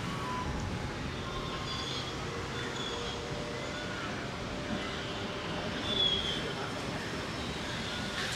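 Steady distant city traffic hum, with a few faint, short high chirps scattered through it and a slight swell about six seconds in.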